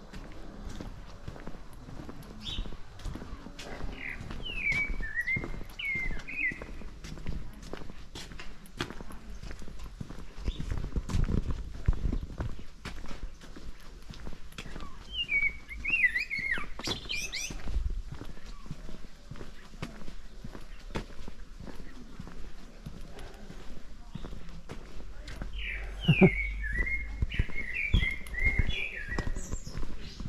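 Footsteps walking steadily on paving stones, with a songbird singing three short warbling phrases: about four seconds in, near the middle, and near the end.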